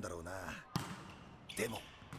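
A single sharp thud of a volleyball bouncing on a gym floor in the anime's soundtrack, about three quarters of a second in, following the end of a man's line of dialogue; a short voice follows.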